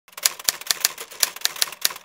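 Typewriter keys clacking in a quick, slightly uneven run of about five keystrokes a second, a sound effect for an animated title logo.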